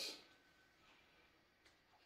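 Near silence: quiet room tone, with only a tiny faint tick near the end.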